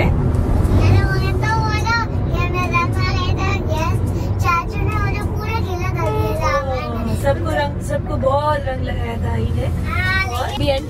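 A high-pitched voice singing in wavering, gliding phrases over the steady low rumble of a moving car's cabin.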